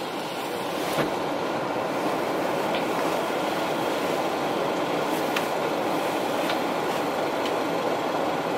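Steady noise inside a car cabin as the car rolls slowly up a drive-through lane, with a few faint clicks.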